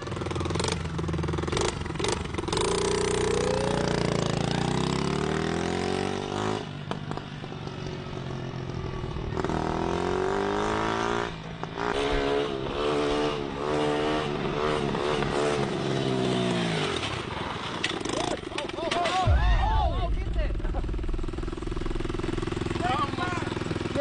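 Mini dirt bike engine revving up and down as it is ridden, its pitch climbing and falling again and again before dropping away about 17 seconds in. A heavy low thump comes about 19 seconds in, followed by voices.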